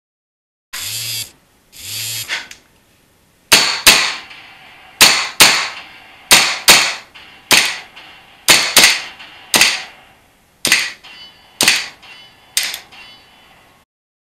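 Two start beeps, then about a dozen sharp gunshot-like cracks, often in quick pairs about half a second apart, as a 1911 pistol fitted with a Cool Fire CO2 recoil trainer is dry-fired against a dry-fire range simulator.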